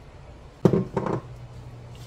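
Two sharp knocks a little over half a second apart, a cup knocking against a mixing bowl as melted butter is poured into dry oat mixture, followed by a low steady hum.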